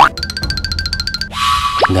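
Cartoon sound effects over background music: a rapid buzzing, crackling effect for about a second, then a held tone and quick rising zips near the end.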